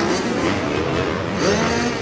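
Motocross bike engines revving on the track, their pitch rising and falling over a steady haze of noise.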